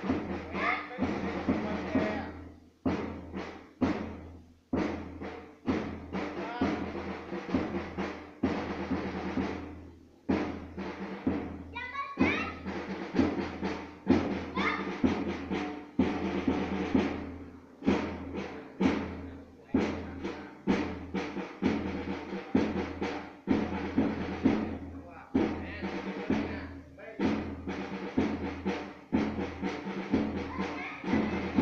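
Hand-held marching drums beating a steady, even marching rhythm with rolls, keeping time for a group marching in step. A voice calls out briefly near the start and again about halfway.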